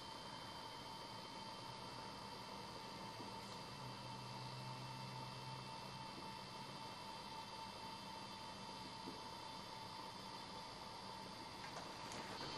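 Faint steady room tone: a low hiss with a thin, steady electrical hum and no distinct events.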